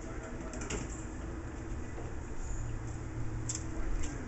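Chevrolet 454 big-block V8 on an engine run stand, idling steadily through open headers, with one short sharp click about three and a half seconds in.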